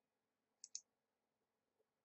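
Two quick, faint clicks of a computer mouse button, clicking the debugger's step button.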